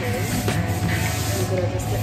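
Busy café room noise: a steady hiss over a low hum, with faint chatter of other people and a few sharp clicks.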